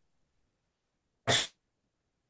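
One short, sharp vocal burst from a person on a video call, about a quarter second long and a little past one second in. The rest is dead silence, as when a call's audio drops out.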